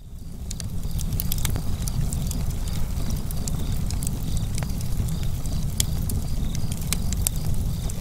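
Wood fire crackling: sharp, irregular pops and snaps over a steady low rumble, fading in over the first second.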